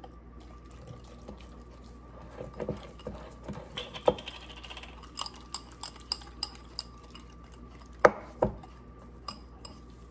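Wire whisk stirring a thick paste of spices and olive oil in a glass bowl, with scattered light clinks and scrapes of metal on glass. There are two sharper knocks about eight seconds in.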